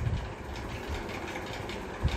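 Steady low rumble with a faint hiss: background room noise.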